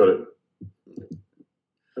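A man's voice says "got it", then a few short, clipped scraps of voice come through the video-call audio, cut off abruptly between them.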